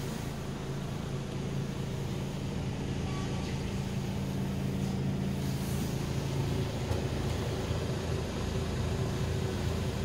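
Iveco Stralis Hi-Way AS440S46 diesel engine idling steadily at about 500 rpm, heard from inside the cab.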